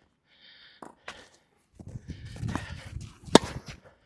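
Tennis ball struck by a racket freshly strung with Kirschbaum Flash 1.25 mm string: one sharp, loud pop about three-quarters of the way in. Before it come fainter ticks and the scuffing of footsteps on the clay court.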